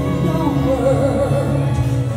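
A woman singing a held, ballad-style line with wide vibrato, amplified through a microphone, over a live chamber orchestra of strings and saxophone.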